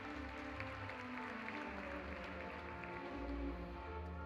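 A live symphony orchestra playing held notes over a low bass line.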